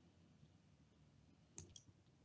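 Near silence: room tone, with one faint short click about one and a half seconds in.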